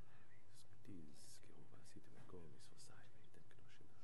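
Faint murmured and whispered prayer in undertone, with soft hissing consonants and brief low voice sounds about one and two seconds in.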